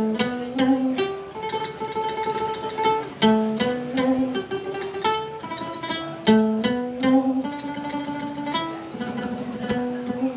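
Vietnamese đàn nguyệt (moon lute) played solo: a melody of held notes, each sustained by rapid tremolo plucking, moving from note to note every half second to a second and a half.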